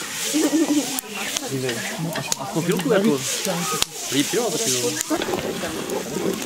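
Diced bacon sizzling in a pot over a wood fire as it is stirred with wooden spoons, with a couple of sharp clicks, about a second in and near four seconds. Voices talk over it throughout.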